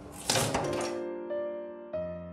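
Foot pedal of a Morso mitre guillotine pushed down onto the floor, giving a sharp knock about a third of a second in that rings off, then a lighter knock near the end as the pedal comes back up. Soft background music plays throughout.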